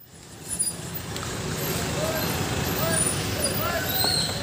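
Outdoor street ambience: a steady rumble of traffic with scattered distant voices, cutting in abruptly at the start.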